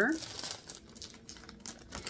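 Faint crinkling of a clear plastic zip-top bag as a hand rummages inside it among marbles.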